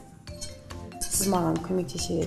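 A few light clinks of a utensil against a ceramic bowl as ingredients are mixed, over background music with a singing voice.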